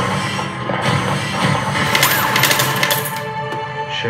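A pachislot slot machine plays its music while a rapid run of coin-like clinking sounds about two seconds in, lasting about a second, as a win is paid out.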